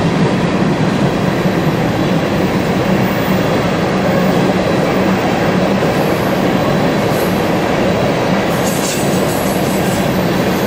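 Empty coal train of aluminium gondolas rolling past close by: a loud, steady rolling noise of steel wheels on rail.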